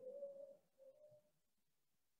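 Near silence: faint room tone with a faint low tone coming and going a few times in the first second and a half.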